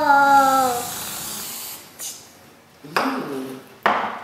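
Aerosol can of whipped cream spraying with a hiss for nearly two seconds. A drawn-out voice is heard as it starts, and a few short vocal sounds come near the end.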